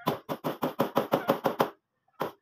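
A fast, even run of sharp knocks from a hand tool striking, about seven a second, stopping shortly before the end.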